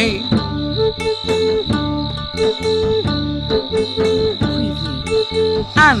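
Crickets chirping steadily through instrumental background music with a repeating melody. Just before the end comes a short, loud swooping glide, the loudest sound.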